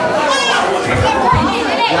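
Children playing and chattering in a hall full of people, with a child's high-pitched voice standing out about half a second in.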